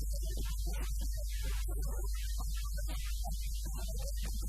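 Steady low electrical mains hum, the loudest thing heard, running under a man's continuous speech in Arabic.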